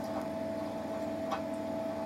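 Steady hum of a reef aquarium's running pumps, with a held tone over it and two faint ticks about a second apart.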